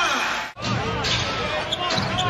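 Basketball arena ambience: crowd murmur and scattered voices over the hall's background noise. About half a second in, the sound drops out briefly at an edit between plays.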